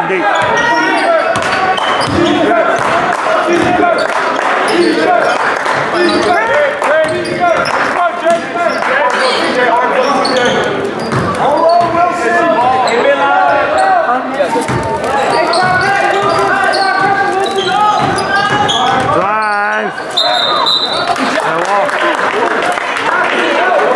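Basketball game in a school gym: a ball dribbling and bouncing on the hardwood floor amid players' and spectators' voices, echoing in the hall. A brief high steady tone sounds near the end.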